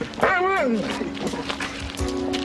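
A dog gives one short whine that glides down in pitch, with held background-music notes underneath.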